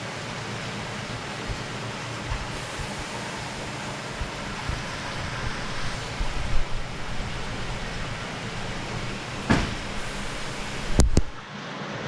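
Steady rush of water in an indoor koi-tank facility, with a sharp knock about three quarters of the way through and a quick double knock near the end.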